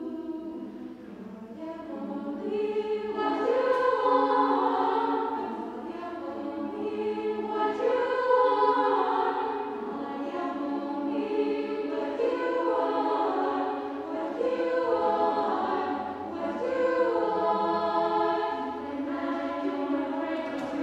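Women's choir singing a cappella in several voice parts, in phrases that swell and ease every few seconds.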